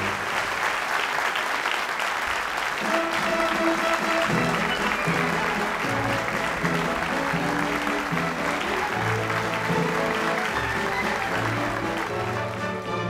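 Live theatre audience applauding after a baritone's sung phrase ends. About three to four seconds in, orchestral music comes in under the continuing applause.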